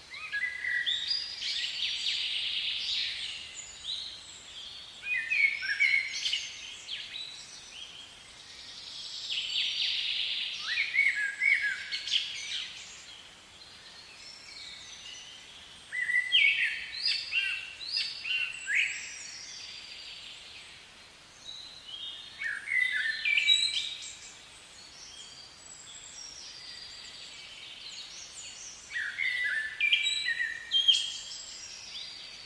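Songbirds singing: bursts of quick chirps and whistles that come every five or six seconds over a faint outdoor background.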